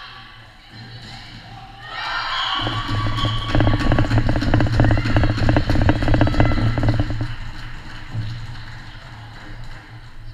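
Music played over the hall's loudspeakers, swelling about two seconds in, loudest in the middle with a steady bass and quick beat, then fading away near the end.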